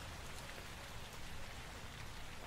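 Steady rain falling, a field recording of rain with a low rumble beneath it, used as the texture of an ambient electronic track.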